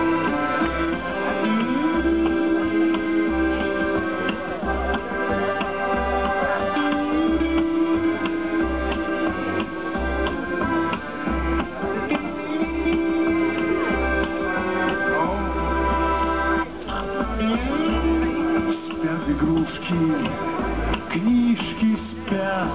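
Live band playing the instrumental introduction of a light, slow foxtrot on accordion, electric guitar and plucked upright double bass. Long held melody notes sound over repeated low bass notes.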